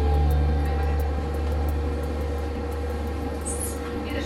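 Low, steady hum of a tram running, heard from inside the car; it is loudest at the start and eases off gradually.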